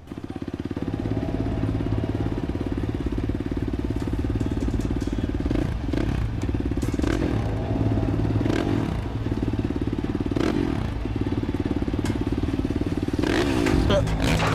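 Motorcycle engine running steadily at speed, a dense buzz of rapid, even firing pulses. Near the end a harsh noisy burst rises over it as the bike goes down.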